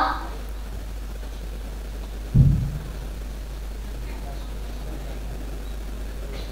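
Quiet room tone over a steady low hum, broken about two and a half seconds in by a single dull, low thump that dies away quickly.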